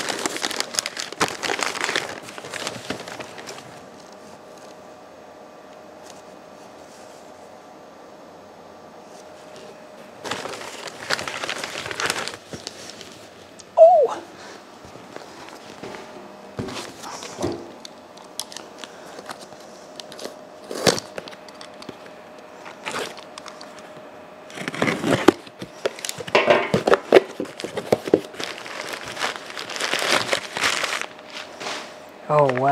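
Newspaper wrapping being crumpled and rustled in bursts as cutters are unwrapped from cardboard boxes, with scattered clicks and a faint steady hum in the pauses. About halfway through comes one sharp knock with a brief squeak.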